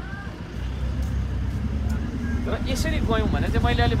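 A steady low rumble from the street, with a man talking over it during the second half.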